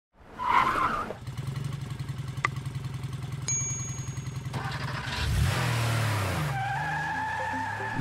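Cartoon motorcycle engine sound effect: a steady low idling chug with a click and a short high ting partway through, then the engine revs and pulls away, ending in a steady held tone.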